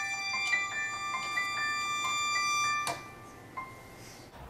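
Keyboard playing a melody of single struck notes, the music closing with a last note about three seconds in.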